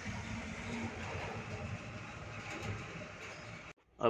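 Steady rumble and road noise of a moving truck, heard from inside the cab, cutting off suddenly just before the end.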